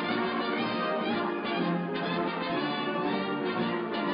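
Orchestral cartoon score with brass to the fore, many instruments playing together at a steady level.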